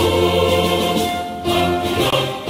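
Choral music: a choir sings a long held chord that changes near the end.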